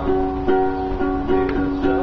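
Acoustic string instrument strummed live in an instrumental passage between sung lines, with steady chords and about two strums a second.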